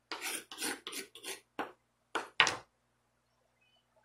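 Chef's knife chopping green bell pepper on a wooden cutting board: a quick run of chops through the first second and a half, a few more single strikes, stopping about two and a half seconds in.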